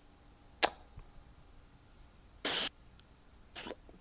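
Quiet voice-chat room tone broken by a short click about half a second in and two brief breathy bursts, like a cough or a sharp exhale, about two and a half and three and a half seconds in.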